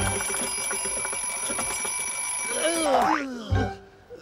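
A twin-bell alarm clock rings steadily for about three seconds and then stops. A brief sliding, voice-like sound follows near the end.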